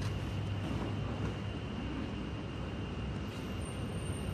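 Steady low rumble of city street noise, with a faint steady high-pitched whine above it.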